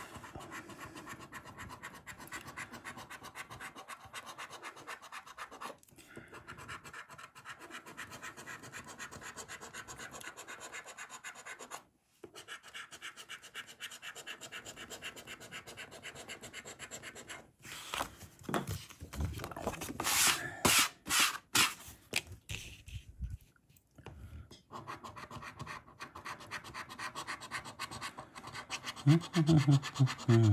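A coin scraping the scratch-off coating from a lottery scratchcard on a wooden table, a steady run of quick rasping strokes. The strokes grow louder and harder for a few seconds about two-thirds of the way through.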